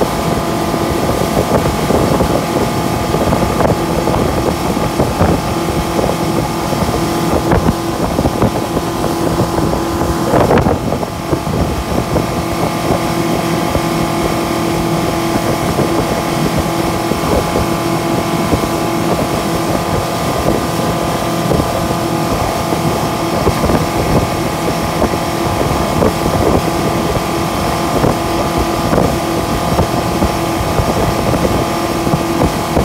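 Yamaha 115 hp outboard motor running steadily at cruising speed under the load of a towed ride tube, over the rush of the boat's wake.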